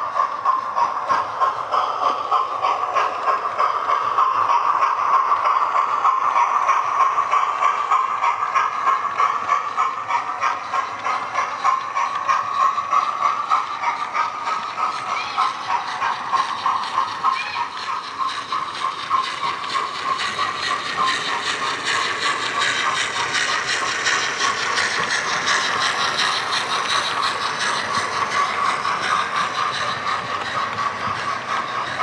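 Model trains running on a model railway: a steady whine from the small electric motors and gearing, with a fast, even clicking from wheels running over the track.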